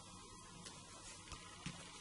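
Near silence: faint room tone with a few soft taps as fingers press a small cardstock cut-out down onto a card on the table.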